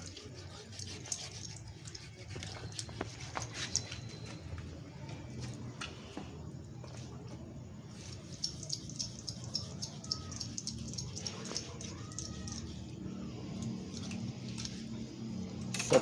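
A knife cutting through a pig carcass's neck, with faint scattered clicks and scrapes over a steady low background hum.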